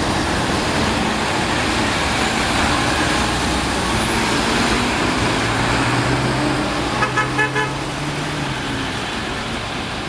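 NABI 40-SFW transit bus pulling away and driving off in street traffic, its engine running steadily with a held engine tone in the middle that then drops away. About seven seconds in, a vehicle horn toots four times in quick succession.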